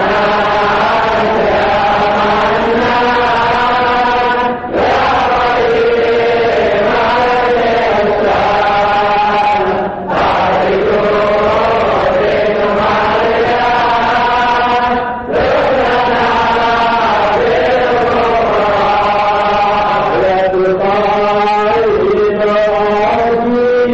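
Islamic devotional chanting: a continuous melodic vocal line in long phrases, with a brief break for breath about every five seconds.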